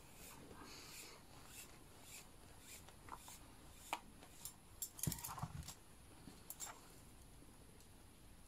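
Faint, scattered clicks and light taps of thin brass pipes knocking together while synthetic string is drawn through them, with a short flurry of louder knocks and rustling about five seconds in.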